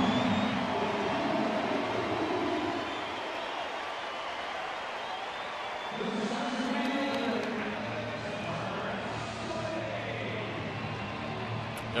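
Ballpark crowd cheering, with music playing over the stadium sound system. The music swells again about halfway through.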